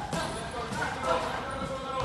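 Dull thuds of boxing sparring, gloves landing and feet on the ring canvas, a few short impacts near the start and about a second in, with people's voices talking in the background.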